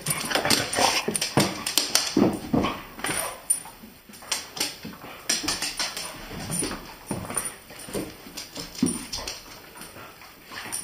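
Dogs play-fighting: a rapid, irregular string of short dog yips and whines, loudest in the first three seconds and sparser after.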